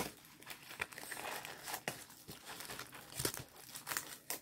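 Plastic packaging of a diamond painting kit crinkling and crackling as it is handled, with a few sharper crackles about two seconds in and past three seconds.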